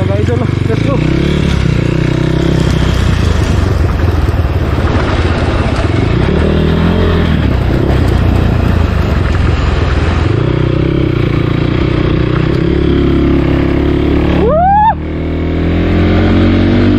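Motorcycle engine running at low speed over a rough dirt track, heard from the rider's seat, its pitch rising and falling with the throttle. Near the end a short rising tone sounds, then the level drops suddenly.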